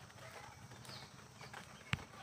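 Faint tapping and scraping of a metal ladle against an aluminium kadai while stirring and frying rice and vegetables, with one sharp click near the end.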